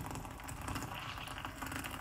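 Just-boiled water pouring from a Peach Street electric kettle's spout into another vessel, a faint, even splashing run.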